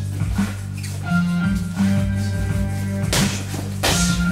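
Background music with a steady bass line, and two sharp hits close together near the end.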